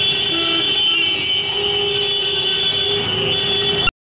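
Busy city street traffic with short vehicle horn toots over a steady high-pitched whine. The sound cuts off suddenly just before the end.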